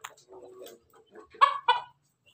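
Crossbred pelung–bangkok–ketawa chickens clucking: faint short clucks, then two short loud calls in quick succession about a second and a half in.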